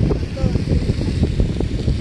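Wind buffeting the microphone on an open beach: an uneven low rumble with a hiss over it, and faint voices in the background.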